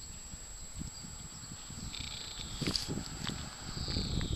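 Low, irregular rumbling noise on the camera microphone as the camera is carried and swung round, growing heavier in the second half. A faint, high, steady chirring of insects joins about halfway through.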